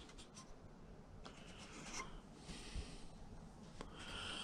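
Faint handling noise: light scratchy rubbing and a few soft clicks of a hand against thin wooden model-ship planks and their pins.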